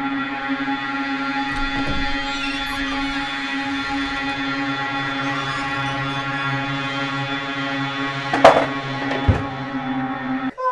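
Eerie ambient music: a steady drone of held tones. Near the end, a loud thump, then a second lower knock less than a second later.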